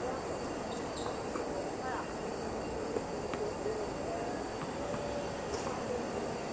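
Tennis balls struck by rackets in a rally: a few sharp pocks, the clearest about halfway through, over a steady background rumble.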